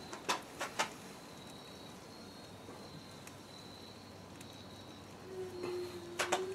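Faint outdoor background with a steady, high insect trill that comes and goes. A few light clicks in the first second, and a low steady hum begins near the end.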